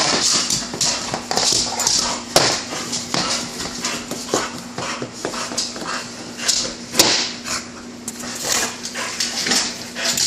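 A pit bull worrying a broom head on a hardwood floor: the dog's vocal sounds over a rapid run of knocks and scrapes from the broom and its claws on the floor, with a sharper knock about two and a half seconds in and another near seven seconds.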